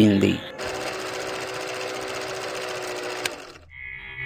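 A steady, fast mechanical rattle like a small motor-driven machine, starting about half a second in and cutting off abruptly near the end.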